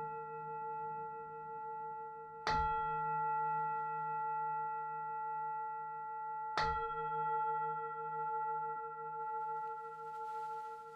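A large brass singing bowl struck with a padded mallet twice, about two and a half seconds in and again near seven seconds. Each strike sets off a long ring of several pure tones that waver slowly as they fade.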